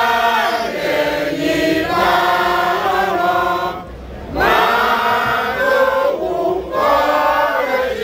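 A group of men's and women's voices singing a chant together in phrases, with short breaks about four and six seconds in.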